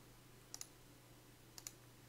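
Near silence with two faint double clicks from a computer mouse, one about half a second in and one near the end.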